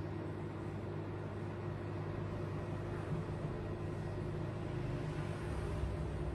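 A steady low rumble and hum with no distinct events.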